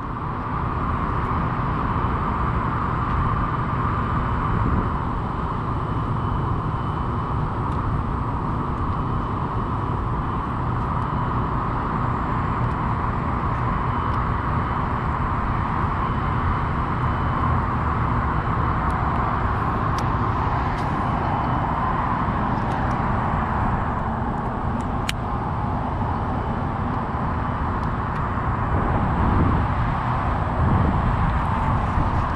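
Steady wind noise buffeting the microphone, over a constant low background hum.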